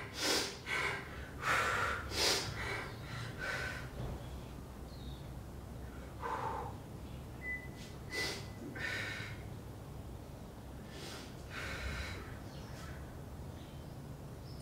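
A woman breathing hard through a dumbbell lunge row set: short, forceful exhalations, several in quick succession at first, then spaced further apart.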